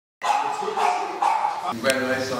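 A dog barking three times in quick succession, followed by a sharp click and a man's voice.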